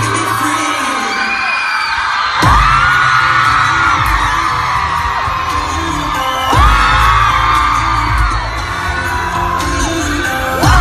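Live pop music at a concert, heard from within the audience: singing over a heavy beat, with a deep bass hit and a sweeping synth tone twice, about four seconds apart, and the crowd cheering underneath.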